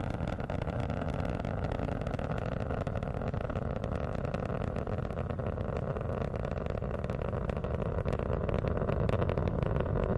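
Space Shuttle launch roar from the solid rocket boosters and three main engines in ascent: a steady, crackling rumble.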